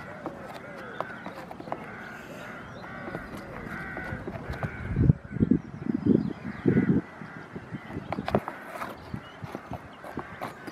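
A goat moving about on a loose chipboard sheet: small clicks and scrapes throughout, and four dull thumps from the board about halfway through. Birds call in the background.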